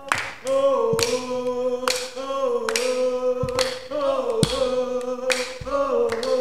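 A group of voices singing a sustained unison chant without instruments, punctuated by wooden sticks clacked together in rhythm, about two sharp strikes a second.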